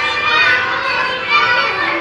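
Children's voices, a mix of chatter and calls from several kids playing together.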